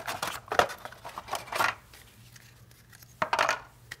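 Cardboard game cards and round cardboard tokens being handled and set down in a plastic box insert: four or five separate short clatters and knocks, with quiet gaps between them.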